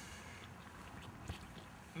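Quiet, steady background hiss with a faint tick a little past halfway.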